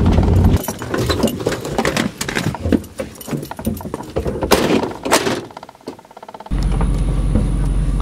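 Truck engine rumbling low, cutting out about half a second in. Then a run of clicks, metallic jingles and knocks, with two louder knocks about halfway through, as the driver gets out of the truck. A low steady rumble returns near the end.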